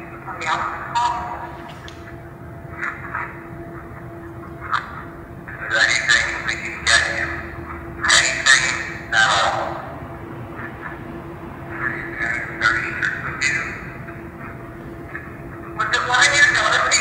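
Short, broken voice sounds too indistinct to make out as words, coming and going, with a steady hum underneath.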